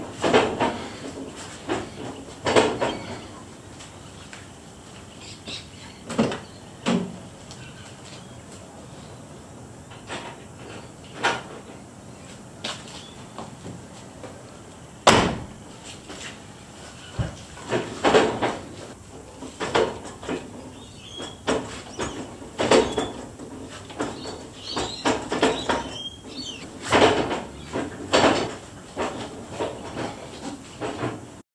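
Irregular clunks and knocks from a 1991 Suzuki Vitara's drivetrain as its raised rear wheel is heaved round by hand in gear, turning the engine over. The loudest knock comes about halfway through.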